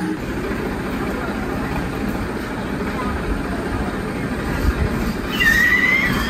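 Steady low rumble of a tractor's engine running. A short high tone sounds near the end.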